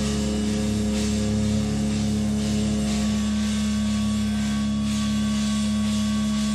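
Instrumental passage of a hard-rock band's demo recording: a sustained, ringing guitar chord held steady over a strong low note, with no vocals.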